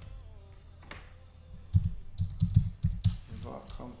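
Computer keyboard typing: a quick run of about eight or nine keystrokes, starting just under two seconds in and lasting about a second and a half.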